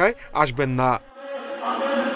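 A man's voice speaking for about the first second, then a sudden cut to a steady buzzing hum over room noise.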